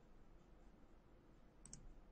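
Near silence: room tone, with two faint clicks close together near the end.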